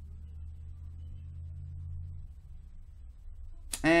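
A faint, steady low hum that dies away a little over two seconds in.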